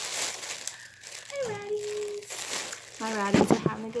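White plastic mailer bag crinkling as it is handled, mostly in the first second. It is followed by a woman's drawn-out vocal sounds, the louder one near the end.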